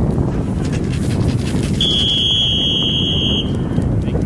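A referee's whistle blown once in one long, steady, high blast of about a second and a half, starting about two seconds in. It is the ready-for-play signal before a football kickoff. Wind rumbles steadily on the microphone throughout.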